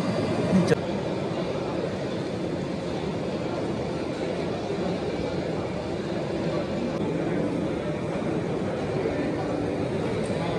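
Air bubbling steadily up through water from coarse, fine-bubble disc and tubular aeration diffusers in a small tank, with a brief louder burst just under a second in.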